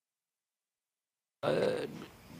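Dead silence with the conference microphone off, then about one and a half seconds in the microphone cuts in abruptly on a man's short, low grunt-like vocal sound that fades off.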